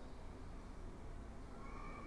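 Faint room tone from an open microphone: a steady low hum with hiss. Near the end a faint, thin, steady tone comes in.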